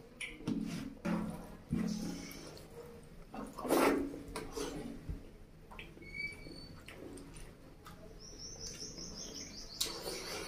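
Close-up chewing and lip-smacking on a mouthful of mutton curry and fried rice, with wet squelches of fingers mixing curry-soaked rice; the loudest smack comes about four seconds in. Near the end a quick run of short high chirps, about six a second, sounds behind it.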